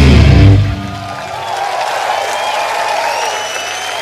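A heavy rock band with distorted guitars, bass and drums playing its closing bars and stopping abruptly about half a second in. A wavering, gliding ring of guitar amplifier feedback is left sustaining.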